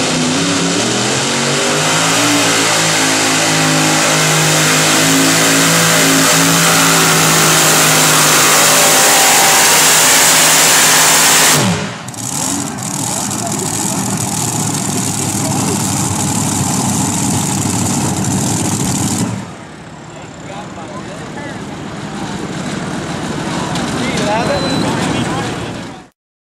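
Modified pulling tractor with several supercharged V8 engines revving up and climbing in pitch as it launches, then running flat out under load for about ten seconds. The engines shut off abruptly about halfway through with a falling whine, leaving a quieter steady rumble that drops lower again later on.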